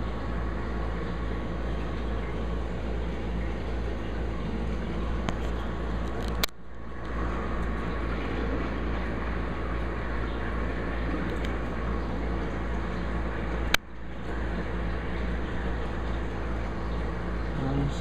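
Steady hum and rush of a running reef aquarium's pumps and water flow, with a strong low hum underneath. Two sharp clicks, about six and a half and fourteen seconds in, each followed by a brief drop in level.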